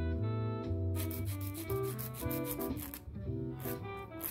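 A nail file rasping over stick-on fake nails in a run of quick back-and-forth strokes about a second in, and briefly again near the end, over background music.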